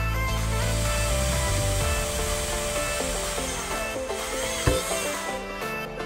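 Electronic background music with a steady beat, over a cordless drill boring through a plastic bottle cap, its high rasping whir stopping about five and a half seconds in. A single sharp knock comes a little before the end.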